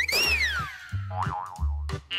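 A cartoon sound effect over light background music: a whistle-like glide that rises and then falls away within about half a second, followed by a short plucked tune.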